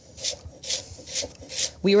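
Knife slicing thinly through a dense red cabbage onto a wooden cutting board: four crisp, rasping cuts, about two a second.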